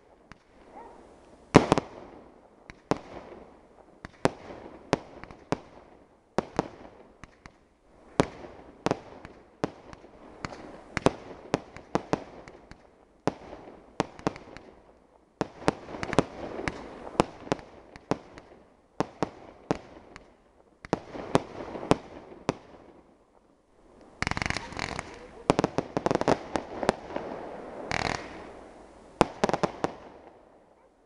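Aerial fireworks display: a rapid series of shell bursts, sharp bangs coming a fraction of a second apart. About three-quarters of the way through, the bursts thicken into a dense run of pops over a steady hiss lasting several seconds.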